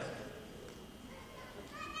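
Quiet hall room tone in a short pause in a man's spoken lecture, his last word fading at the start. A faint voice-like sound comes near the end, just before he speaks again.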